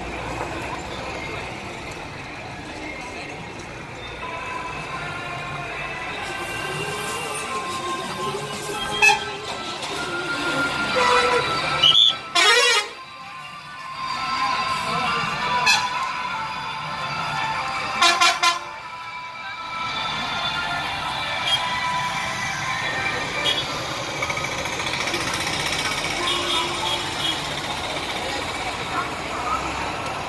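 Busy bus-stand traffic heard from inside a moving bus: vehicle engines, a murmur of voices and repeated horns. Two short, loud horn blasts come about twelve and eighteen seconds in.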